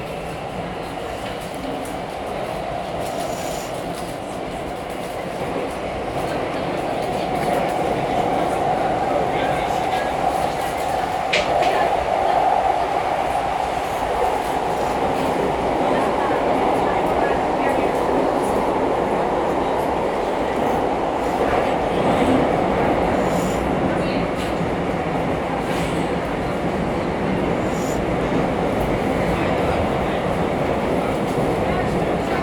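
Bucharest metro train running, heard from inside the passenger car: a steady rumble of wheels and motors that grows louder about six seconds in. A brief high click sounds about eleven seconds in.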